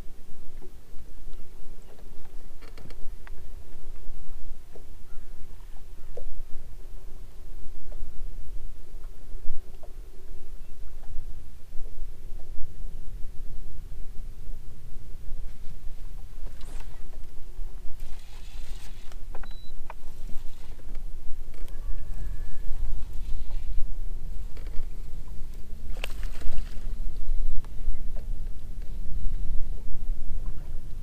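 Wind noise on the microphone and small waves lapping against a bass boat's hull, with a few scattered clicks and knocks.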